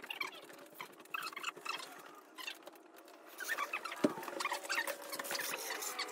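Rustling and small squeaks of someone rummaging about, with one dull thump about four seconds in.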